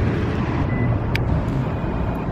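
Steady low rumble of urban outdoor background noise, with one short sharp click about a second in.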